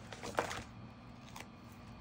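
Paper and sticker handling at a craft desk: a few light taps and paper rustles in the first half second as a sticker is taken from its sheet and pressed onto cardstock, then faint room tone with a low steady hum.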